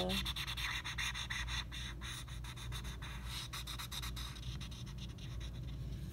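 Felt-tip marker rubbing and scratching across paper in rapid short strokes as an area is colored in.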